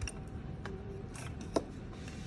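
A few light clicks and taps, the sharpest about one and a half seconds in, over a steady faint hum and background noise.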